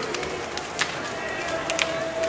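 A large wood bonfire burning, with sharp, irregular crackles and pops over a steady rush of flames, and a crowd chattering in the background.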